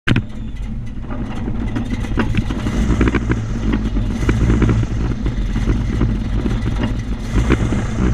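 Airboat engine and propeller running at low speed: a steady, loud low drone, with frequent short clicks and rattles over it.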